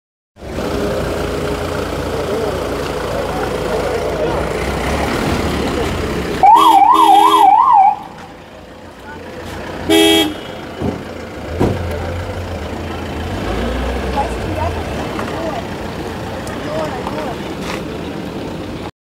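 An ambulance siren gives a brief yelp, its pitch sweeping quickly up and down about four times in a second and a half. About two seconds later comes one short horn toot. Both sound over the murmur of a crowd's voices.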